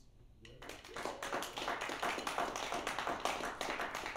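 Audience applauding, starting about half a second in and building to a steady patter of many hands clapping.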